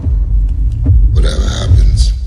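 Film-trailer sound design: a deep, steady rumble with a harsh, rasping alien-creature growl starting about a second in.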